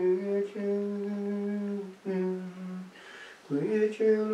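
A single voice singing plainchant in long, steady held notes with short breaks between phrases; near the end a new phrase starts with an upward scoop in pitch.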